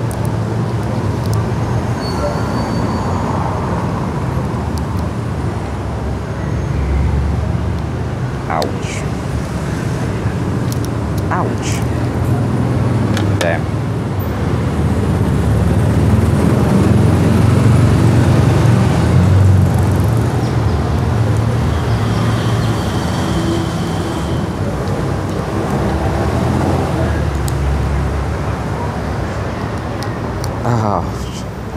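Steady low rumble of road traffic, growing louder around the middle and easing off again, with a few sharp clicks scattered through it.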